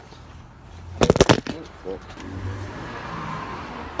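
A spin-on oil filter being wrenched loose with a pliers-type filter wrench: a quick burst of sharp cracks about a second in as the stuck filter breaks free, then a softer steady scraping as it turns.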